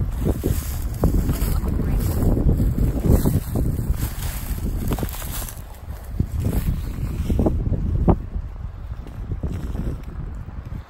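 Wind buffeting the microphone in a low rumble, with irregular crunching footsteps through dry undergrowth.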